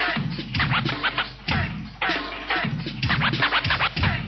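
Old-school hip hop track with turntable scratching: quick back-and-forth record scrapes over a drum beat.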